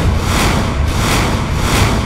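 Dramatic soundtrack effect: a run of whooshing swishes, about two a second, over a deep steady rumble.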